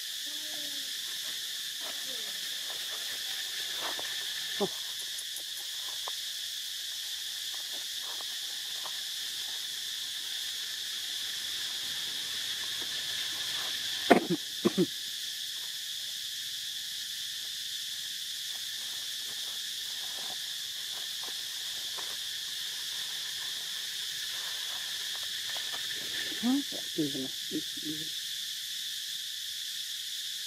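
A steady, high-pitched insect chorus, with a few brief louder sounds about halfway through and a short cluster of them near the end.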